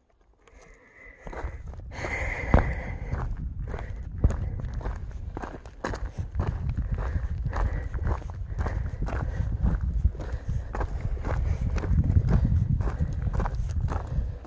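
Hiking footsteps on a dirt trail, about two steps a second, starting about a second in, over a low rumble on the microphone.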